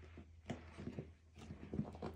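Small dog rolling and wriggling on its back on a rug: irregular soft thumps and scuffs of its body and paws against the mat, in a few quick clusters, with a low steady hum underneath.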